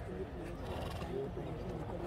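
A horse neighing over the background chatter of people.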